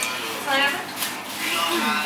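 Women's voices talking indistinctly, with a brief click about a second in.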